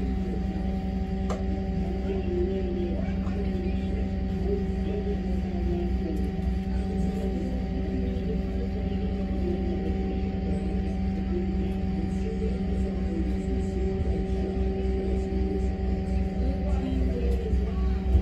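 Steady machinery hum aboard the boat: a throbbing low rumble with several held steady tones over it, and faint wavering sounds in the middle range.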